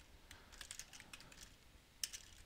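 Faint typing on a computer keyboard: a quick run of soft keystrokes.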